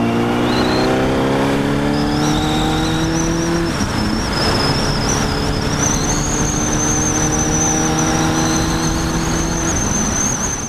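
Honda CBR1000RR inline-four engine pulling hard under acceleration, its pitch climbing steadily, with an upshift about four seconds in and another near the end. Wind rushes over the helmet camera the whole time.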